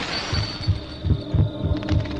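A heartbeat sound effect on the film's soundtrack: a fast, regular run of paired low thumps, lub-dub, starting about a third of a second in as a hiss fades away.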